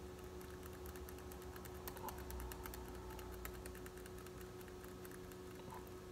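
Faint, rapid light clicking from a computer as a web page is scrolled, heaviest through the middle few seconds, over a steady low electrical hum.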